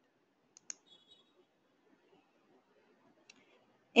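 Computer mouse clicking: two quick clicks about half a second in, then one fainter click near the end.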